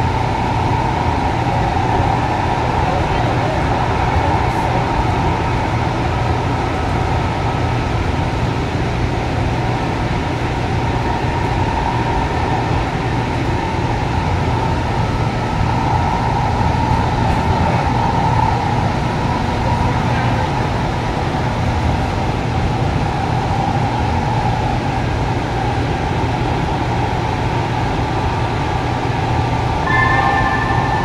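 Steady running noise inside a Breda P2550 light-rail car at speed: an even rumble of the wheels on the rails and the car's running gear, with a constant hum above it.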